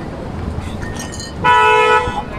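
A vehicle horn gives one steady honk of about half a second near the end, over street and traffic noise.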